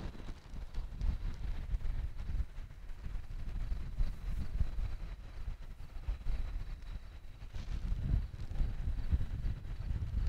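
Wind buffeting the microphone, an uneven low rumble that rises and falls in gusts.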